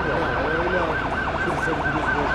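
Emergency-vehicle sirens in a fast yelp, the tone rising and falling about four times a second over a steady murmur of a large crowd.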